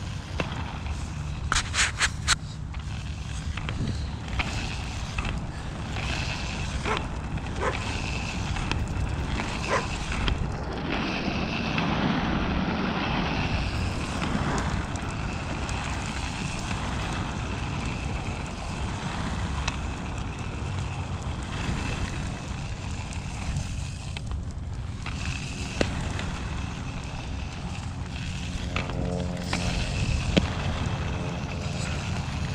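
Inline skate wheels rolling steadily over a coarse asphalt path, with a few sharp clicks about two seconds in.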